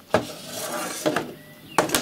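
Handling noise as a Yaesu FT-857D transceiver is lifted and turned round on a desk: a few sharp knocks and clunks of its case and cables, the loudest near the end.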